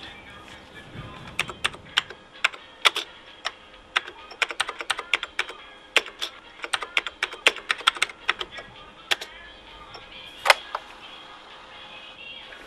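Computer keyboard keys clicking in an irregular run of keystrokes as a command is typed. A single louder keystroke comes about ten and a half seconds in.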